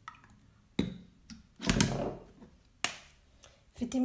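Handling sounds of a small plastic bottle of vitamin E oil and a plastic dropper over a glass: a few sharp plastic clicks spaced about a second apart, with one louder rustling handling noise near the middle.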